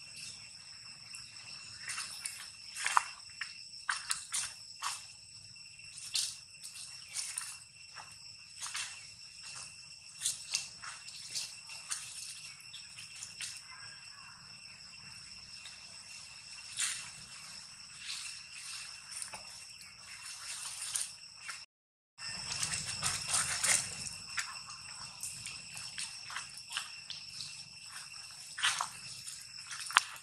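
Irregular rustling, crackling and scuffing of dry fallen leaves and stone as macaques move about, over a steady high-pitched drone.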